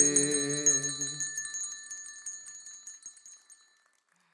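Handbells ringing out together with the song's final held note. The low note stops about a second and a half in, and the bells' ringing fades away by the end.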